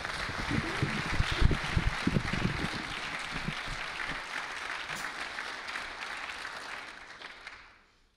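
Audience applauding, dying away over the last second. A few low thumps come in the first couple of seconds.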